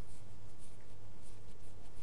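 Lecture-hall room tone: a steady low hum with faint scattered scratches and rustles.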